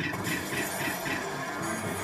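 Music from a Merkur video slot machine, playing continuously while the reels spin during a free game.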